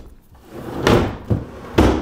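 A wide steel flat-file drawer sliding shut on its runners and banging closed. The loudest bang comes near the end.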